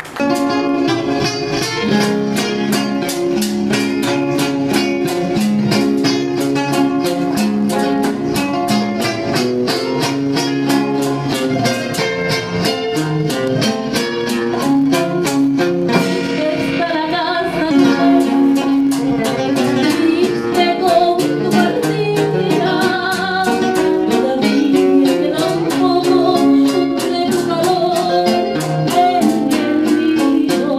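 Live rockolera music: nylon-string acoustic guitars playing a steady strummed rhythm, with a woman singing into a microphone over them from about halfway in.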